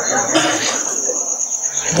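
Crickets chirping in a steady, high-pitched trill.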